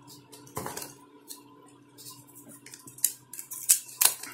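Handling sounds of a smartphone being lifted out of its cardboard box: scattered light clicks and rustles, a louder tap about half a second in and a couple of sharp clicks near the end.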